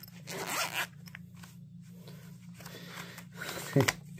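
A short zipper-like rasp about half a second in, then faint handling noise, as gloved hands open a knife's packaging.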